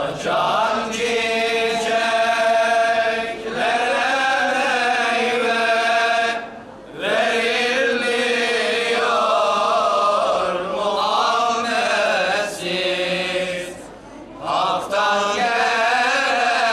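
Islamic religious chanting: a voice chanted in long, ornamented phrases that bend up and down in pitch, with short breaks for breath about six and a half and fourteen seconds in.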